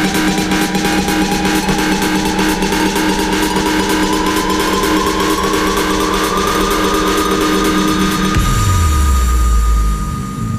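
Electronic dance music build-up: a synth sweep rises steadily in pitch over fast, even drum hits. About eight seconds in, a deep bass tone drops in pitch and holds, then the music falls away at the end.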